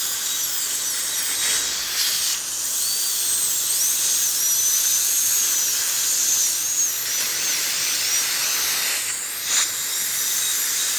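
Dental drill (handpiece with bur) whining as it cuts into a child's baby tooth. Its high whine wavers slightly in pitch over a steady hiss.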